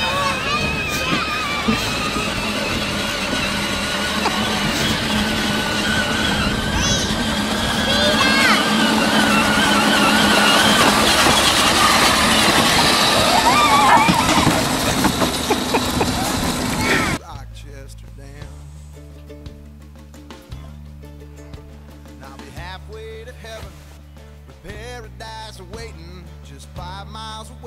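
A child's battery-powered ride-on toy vehicle running outdoors, with voices and a loud, rough noise on the live audio. About 17 s in this cuts off suddenly to quieter country music with acoustic guitar.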